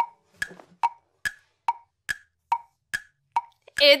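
A ticking sound effect: about nine hollow wooden tocks, evenly spaced at roughly two and a half per second, each with a short ring. It marks a thinking pause for viewers to answer a question.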